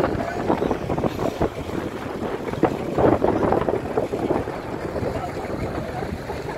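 Wind buffeting the microphone in uneven gusts, a rough rumbling noise that swells and falls, loudest about halfway through.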